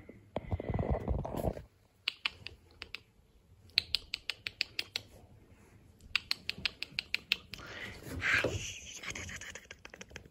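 A cat grooming itself: runs of quick, soft licking clicks, about five a second, after a brief rustle at the start.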